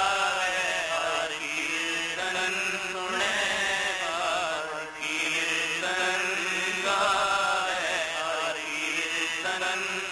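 Sikh shabad kirtan: a male voice sings long, ornamented phrases over held harmonium chords, with tabla accompaniment. The voice pauses briefly about halfway through.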